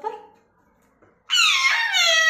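Alexandrine parakeet giving one loud, drawn-out call that slides down in pitch, starting a little past halfway.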